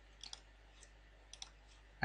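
Faint computer mouse clicks: two quick pairs of clicks, one just after the start and one a little past halfway.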